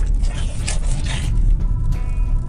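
Steady low rumble of a moving car heard from inside the cabin, with irregular scraping and rubbing noises from the camera being handled close to the microphone.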